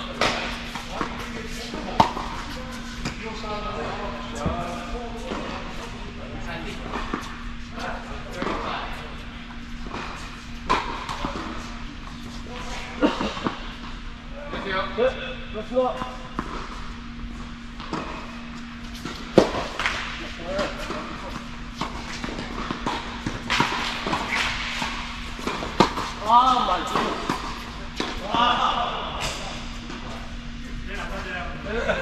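Tennis balls struck by rackets and bouncing on an indoor hard court: scattered sharp hits that echo in a large hall, over a steady low hum.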